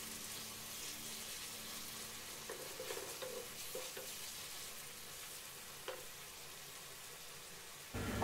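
Cooked-down onion-tomato masala sizzling faintly in oil while a wooden spatula stirs it, scraping the pan softly a few times in the middle. There is one light knock of the spatula about six seconds in.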